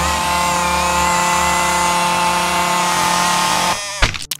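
Electric can opener motor whirring steadily at full speed as it cuts around a can, then stopping just before the end, followed by a sharp loud impact.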